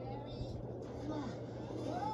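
Cartoon character voices with short exclamations, played through a television speaker and picked up in the room over a steady low hum.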